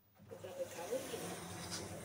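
Lift cabin noise: a steady hiss sets in from near silence about a third of a second in and holds, with faint wavering tones over it.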